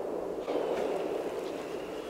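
The echo of a deer rifle's shot dying away across the field and woods, heard as a faint, fading rumble.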